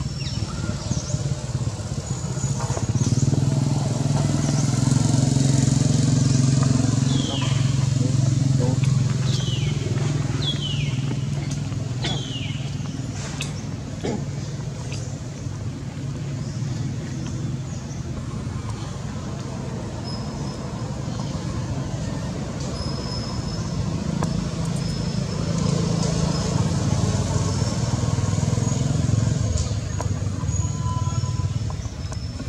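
A motor vehicle's engine running nearby, a steady low hum that swells twice, louder a few seconds in and again near the end. About a quarter of the way through, four short high calls fall in pitch one after another.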